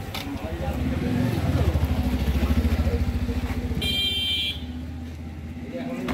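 A motor vehicle engine running close by, a low rapid pulsing that swells to its loudest through the middle and fades off after it. A short high-pitched tone sounds briefly just past the middle.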